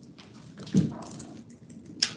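Faint computer keyboard typing, with one short, louder low sound about three-quarters of a second in.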